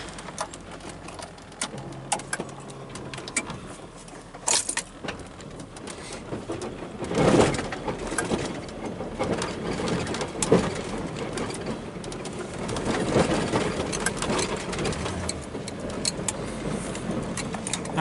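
Pickup truck plowing snow, heard from inside the cab: the engine runs low and steady under scraping and rattling, with scattered knocks and bumps, the loudest about seven seconds in.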